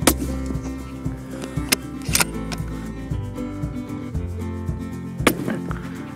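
Tikka T3 bolt-action rifle in .25-06 fitted with a moderator, firing a three-shot group of handloaded test rounds: a shot at the start, another about two seconds in and a third about five seconds in, over background music.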